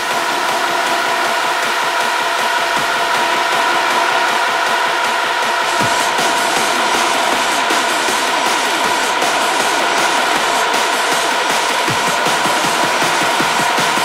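Hard techno: a fast, dense rhythm under sustained synth tones and a haze of noise, with a low falling sweep twice, about six seconds apart.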